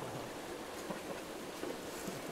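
Steady outdoor background hiss with no distinct event, and a faint murmur of voices.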